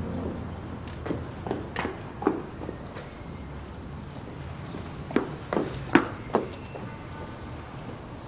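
Footsteps on a paved street: a run of steps about a second in, and another run of four steps a little past the middle, each step a short sharp click.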